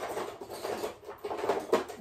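Rummaging through small items on a sewing table to find a pair of scissors: irregular light clicks, taps and rustling, with a few sharper clicks in the second half.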